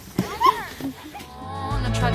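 Short excited voice calls and exclamations, the loudest about half a second in. Background music then fades in and swells near the end.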